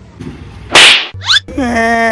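One loud, sharp slap across the face. A moment later comes a short rising glide and then a long held high note, a wail of pain.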